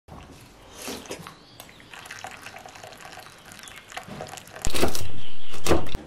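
A person slurping soup from a metal spoon, with small wet sips and spoon sounds, then two loud slurps over a low rumble in the last second.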